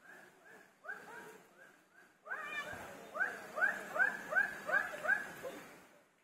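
An animal calling in quick repeated series of short pitched calls, about three a second; a second, louder run starts a little past two seconds in and fades out near the end.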